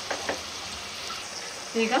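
Grated raw mango sizzling in hot oil in a nonstick kadai, stirred with a wooden spatula, with a few short spatula scrapes at the start.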